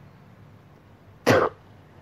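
A single short, sharp burst of breath from a person's throat, like a cough, about a second in.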